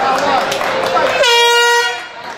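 A single horn blast, steady in pitch and under a second long, starting about a second in over crowd chatter: the signal for round one to begin.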